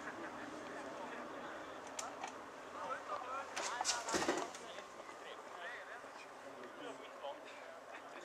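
Distant, indistinct voices of football players calling to one another, with a louder cluster of shouting about halfway through.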